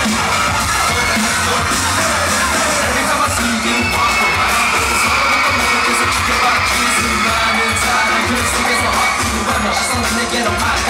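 Pop dance song played loud over a concert sound system with a steady beat, and a crowd of fans cheering and screaming over the music.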